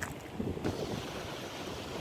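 Wind buffeting the microphone outdoors, a low irregular rumble.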